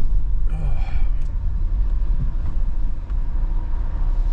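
Steady low rumble of a car running, heard from inside the cabin, with no sudden events.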